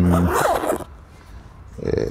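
Zipper on a padded camera-accessory pouch, pulled along in one quick rasp about a third of a second in.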